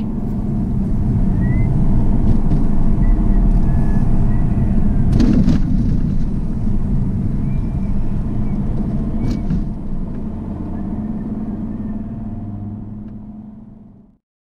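Car cabin road noise, the engine and tyres running steadily, with two thumps from the wheels hitting potholes, one about five seconds in and another about four seconds later. The sound fades out near the end.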